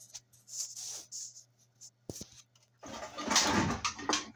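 Handling noise on a phone's microphone: short rustles, a couple of sharp clicks just after two seconds, then a louder rubbing noise from about three seconds in, over a faint steady low hum.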